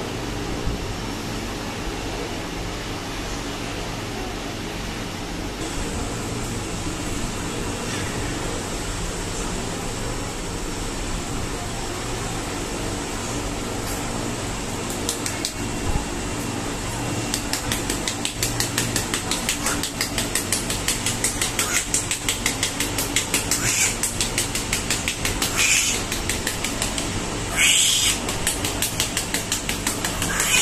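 A steady background hum throughout; from about halfway in, a newborn's back is patted rapidly and rhythmically by a gloved hand, several pats a second, with a few louder rustling bursts near the end. The patting is stimulation of a newborn in poor condition.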